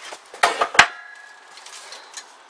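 A car stereo head unit handled, its metal case knocking twice, the second a sharp metallic clink that rings briefly.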